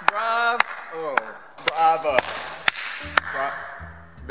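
One person clapping slowly, about two claps a second, in a large empty hall, with short shouted calls between the claps. A low steady hum comes in about two seconds in.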